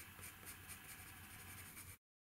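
Faint, quick, even strokes of a green coloured pencil scratching across paper as it shades in shadow.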